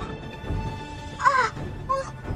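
A bird cawing twice over dark background music: a longer, falling call just past a second in and a short one near the end.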